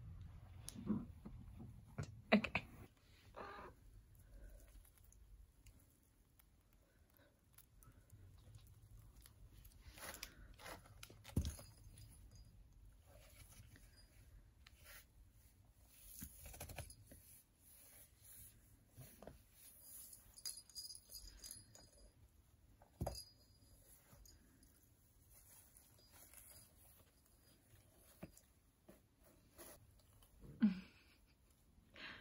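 A cat biting and pawing at a corrugated cardboard scratcher tube on carpet: faint, scattered crunches, scrapes and clicks of cardboard, with a few sharper clicks now and then.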